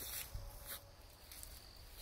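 Quiet woodland trail ambience: a faint, thin insect chirp in the middle and a few soft footsteps on the grassy path, over a low rumble.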